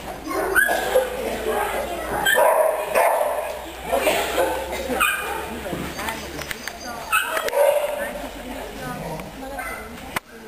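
A dog barking and yipping in short calls at intervals during an agility run, mixed with a person's voice.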